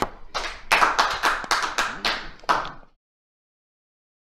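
Audience applauding, a dense patter of many hands clapping that cuts off abruptly about three seconds in.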